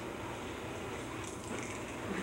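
Steady background hiss and low hum of a room recording, with no distinct event; a few faint, high rustles come in the second half.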